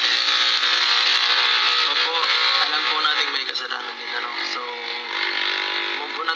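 Loud steady car-cabin noise with a low hum, and a man's voice talking over it from about two seconds in.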